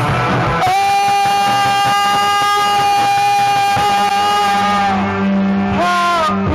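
Live rock band with electric guitars, bass and drums playing; a single high note is held steady for about four seconds in the middle, with the low end dropping back under it.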